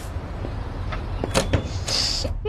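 A wooden front door being opened: a few soft steps and clicks, then the latch and a short creak about a second and a half in, over a steady low background rumble.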